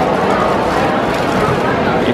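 Paper taco wrapper crinkling and rustling as a taco is unwrapped by hand.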